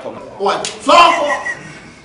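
Loud voices speaking, with a sharp slap-like smack about half a second in.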